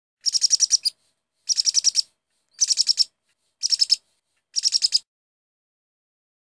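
A bird chirping in five quick bursts, each a rapid run of six to eight high chirps, about a second apart.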